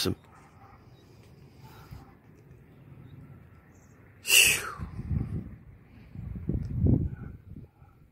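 A sudden loud vocal burst from a person, about four seconds in, followed by low muffled rumbling on the microphone.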